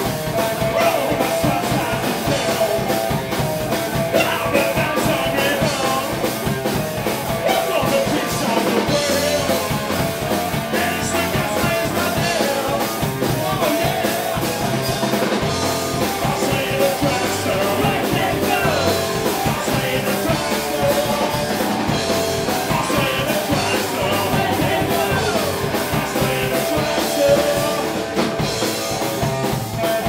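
A live punk rock band playing: electric guitars and a drum kit, with a man singing into a microphone over them. The music is loud and runs without a break.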